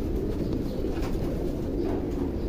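Many pigeons in a loft cooing together: a dense, steady chorus of low coos.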